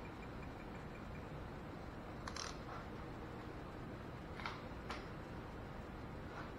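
A few faint metallic clicks of a socket being changed on a torque wrench: a short rattle about two seconds in, then two sharp clicks near the middle-to-late part, over quiet garage room tone.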